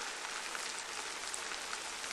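Steady rainfall, an even hiss of rain with no break.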